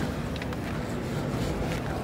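Steady, even background noise of a large exhibition hall, with low rumble from the camera's microphone as it is carried, and a few faint clicks.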